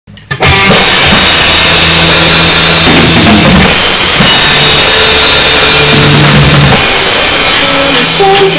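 Drum kit with Zildjian cymbals played loudly along to a recorded song: kick, snare and a wash of cymbals over steady held low notes from the track. It starts abruptly about half a second in.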